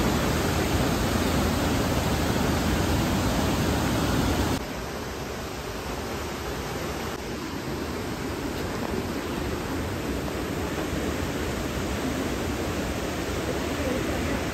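Steady rushing of a waterfall. About four and a half seconds in it cuts abruptly to a quieter, steady rush of river water.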